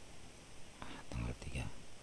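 A man's voice: one short, low, mumbled utterance lasting under a second, about a second in, with no clear words.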